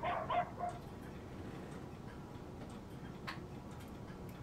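A small dog barking faintly, a few short high yips in the first second.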